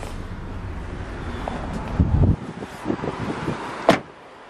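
Low wind rumble on the microphone with handling noise as the camera moves out of the vehicle, ending in a loud thump about two seconds in. A few light knocks follow, then a sharp click near the end.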